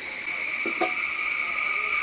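A loud, steady, high-pitched insect chorus of constant shrill tones, stepping up in level just after the start.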